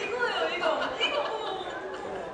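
Speech only: people talking, with background chatter in a room.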